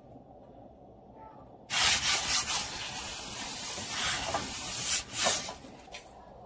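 Oil hissing and sizzling on a hot nonstick grill pan as it is wiped across the surface; the sizzle starts suddenly about two seconds in and surges louder a few times before dying away near the end.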